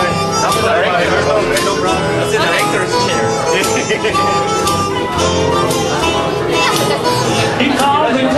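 Live acoustic band playing an instrumental break in the song, a lead line of held, bending notes over a steady strummed rhythm.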